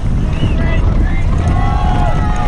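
Wind buffeting the microphone of a camera riding with a downhill mountain bike at speed, over a steady low rumble of the tyres and bike on a dry dirt trail. Spectators shout and cheer in short bursts.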